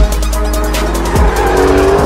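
Car tyres squealing as the car slides through its own tyre smoke, with a long squeal in the second half, over loud trailer music with deep bass hits.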